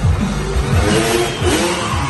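Dirt-bike motorcycle engine revving hard, its pitch climbing near the end as the bike launches, over loud show music with a steady bass beat.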